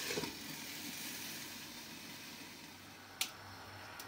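Breaded patties frying in oil in a frying pan covered with a glass lid: a quiet, muffled sizzle that slowly fades away. A single short click comes about three seconds in.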